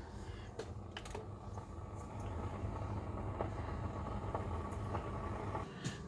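Keurig single-serve coffee maker brewing: a steady low pump hum that grows a little louder about two seconds in, with a few faint clicks.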